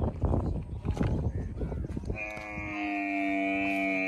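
Dromedary camel calling: irregular low grumbling for the first half, then one long, steady moan from about halfway through.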